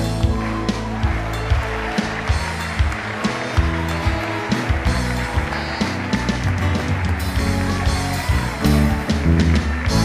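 Live band music with no singing: drum hits keeping a steady beat over held bass notes.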